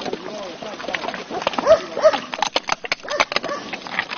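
Tibetan pigs grunting and giving short squeals as they feed, over many sharp cracks and crunches of walnut shells being bitten and chewed.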